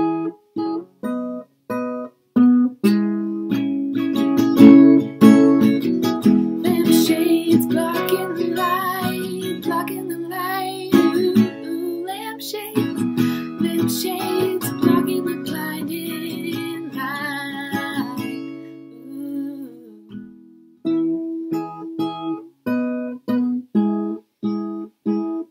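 Steel-string acoustic guitar with a capo, strummed. It opens with short, stopped chords with gaps between them, then moves into a long stretch of full strumming that rings on. That stretch fades away and breaks off, and clipped, choppy strums start again near the end.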